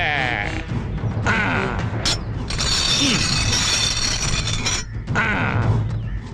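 Film soundtrack: a man's wavering, bleat-like laugh in the first half second, over background music that thickens into a dense burst from about two and a half to five seconds in.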